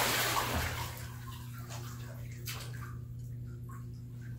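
Water splashing in a baptistery pool as a person is raised up out of immersion baptism, loudest in the first second, then settling into soft sloshing and a few drips.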